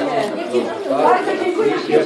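Several voices talking over one another: indoor chatter.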